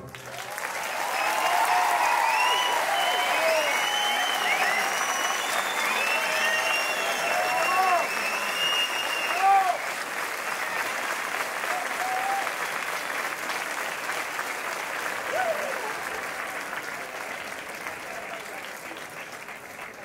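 Audience applauding, with cheers and shouts over the clapping in the first half. The applause swells within the first second, then slowly dies away.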